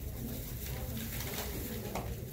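Low, indistinct murmur of people talking quietly, over a steady room hum.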